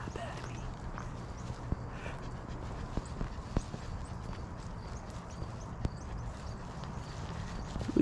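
Footsteps of a person walking on a paved path: light, irregular taps and scuffs over a low steady rumble of wind or handling on the microphone.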